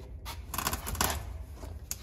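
Brief rustling and scraping handling noises about half a second in, then a single sharp click near the end, over a steady low rumble.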